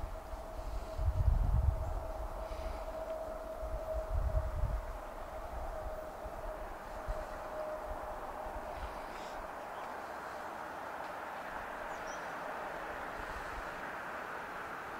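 Approaching diesel train: its rail and wheel noise grows steadily louder. A single steady high tone fades out about halfway, and a few low thuds are heard in the first few seconds.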